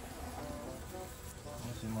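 Honeybees buzzing around a hive entrance: several faint, short, overlapping hums as bees fly in and out.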